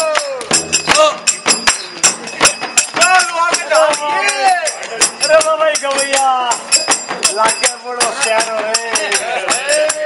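Shekhawati chang dhamaal: voices singing a Holi folk song in long, bending notes over regular strokes of the chang, a large hand-struck frame drum, with bright metallic jingling throughout.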